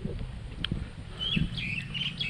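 Birds chirping: a cluster of short, high calls starting a little over a second in, over a low rumble.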